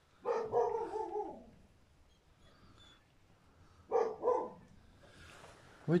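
An animal calling twice: a drawn-out cry falling in pitch about a quarter-second in, and a shorter one about four seconds in.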